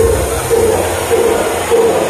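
Loud dance music from a disco sound system. The bass drops away early on, leaving a mid-pitched note repeating about every half second.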